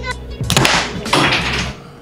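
A wooden Jenga tower collapsing, with a sharp crash about half a second in as the blocks hit the wooden table, then a second or so of blocks clattering and tumbling. Laughter and background music play underneath.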